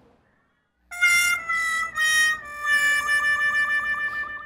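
Comic sad-trombone style failure sound effect: four reedy notes stepping down, the last held long and wavering, starting about a second in. It marks a missed answer in the phone-in draw.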